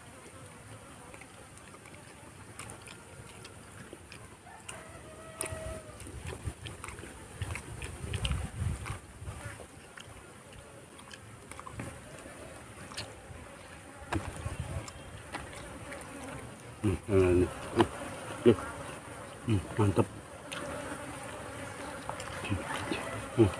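Flies buzzing around food over the steady hiss of a noisy recording, with brief eating sounds near the end.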